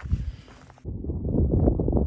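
Wind buffeting a phone microphone on an exposed mountain summit: loud, gusty low noise that starts abruptly about a second in, after a moment of quieter trail ambience.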